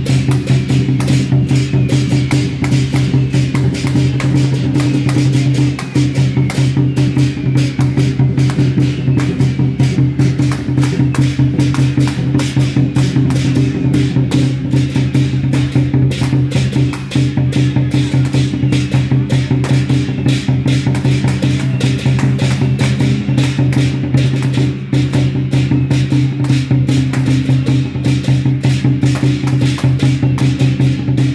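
Temple procession music: a fast, even percussion beat over a steady low drone, accompanying a giant deity figure's performance.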